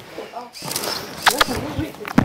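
A woman's soft voice murmuring affectionately to a dog, with a couple of sharp kissing smacks about a second in and near the end.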